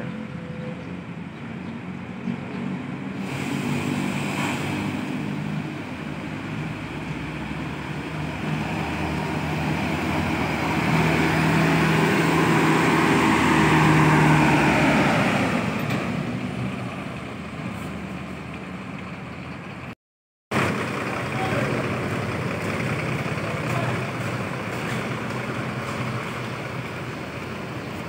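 Diesel engine of a large coach bus running as it drives toward and past close by, growing louder to its loudest about twelve to fifteen seconds in and then easing off. After a short break in the sound around twenty seconds, the engine runs on steadily close by.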